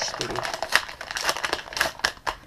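Brown paper packaging being handled and crumpled by hand, an irregular crinkling and rustling with sharp crackles.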